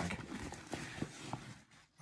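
Nylon shoulder bag being handled as its main compartment is opened: rustling fabric with a few light clicks and knocks, fading out near the end.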